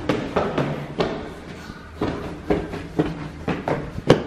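Footsteps of shoes walking across the floor of a house, about two steps a second.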